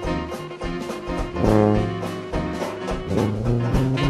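A traditional New Orleans jazz band, with tuba, trumpet, trombone, saxophones, banjo, piano and drums, plays a rag ensemble with brass lines over a steady beat.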